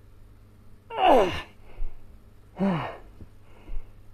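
A man's voiced exhalations of effort, two of them about a second and a half apart, each falling in pitch, as he strains through a floor exercise.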